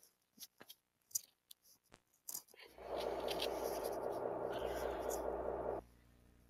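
A few faint clicks, then a steady, buzzy electronic drone that starts about three seconds in, holds for about three seconds and cuts off suddenly.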